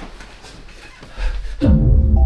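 A faint rustle, then a deep rumble building about a second in and a loud falling bass-drop sound effect near the end, which leads into a musical sting.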